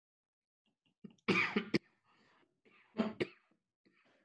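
A man coughing in two short bouts, about a second and a half apart.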